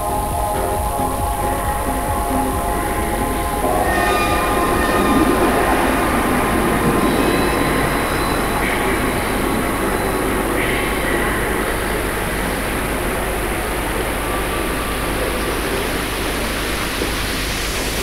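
Electronic techno from a DJ mix: a steady low bass under a harsh, rushing noise texture that swells in about four seconds in and carries on, replacing the pitched synth tones heard at the start.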